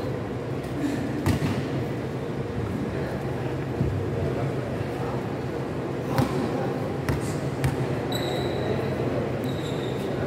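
Basketball bouncing on a concrete court a few times, scattered single thumps over the steady background noise of a large covered gym.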